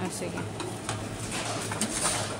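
Reverse vending machine taking in an aluminium drink can: a low steady hum with a few faint clicks as the can is fed into the opening.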